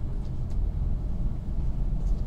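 Steady low rumble of background room noise, with a faint click about half a second in.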